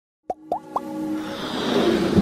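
Animated logo intro sting: three quick plops, each sliding up in pitch, about a quarter second apart, then a swelling whoosh that builds louder toward the end.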